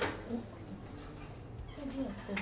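Short, quiet wordless sounds from a woman's voice, after a sharp click at the very start.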